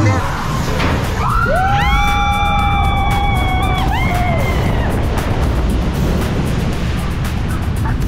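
Two riders scream on a log flume's big drop: long, held screams that rise about a second in, hold for roughly three seconds, then fall away. Rushing water noise follows as the log reaches the bottom.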